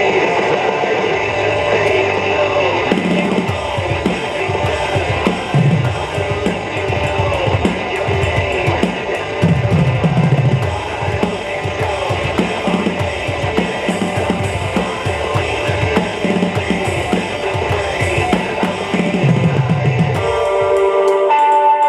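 Drum kit with cymbals played along to a recorded hard rock song with electric guitar; the drums and cymbals come in about three seconds in and keep a steady rock beat.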